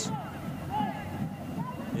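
Faint voices calling and talking in the background, over a low steady hum of ambient noise.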